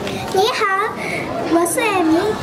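A child's voice speaking into a handheld microphone, starting about half a second in.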